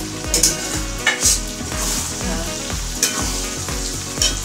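Chili chicken sizzling in a hot wok as sauce is poured over it, with a few short scrapes of a spatula.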